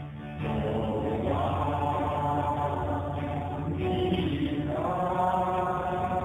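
Worship song sung with keyboard accompaniment: voices holding long notes in phrases over a steady low keyboard part, a brief dip at the start and new phrases coming in about a second in and again near five seconds.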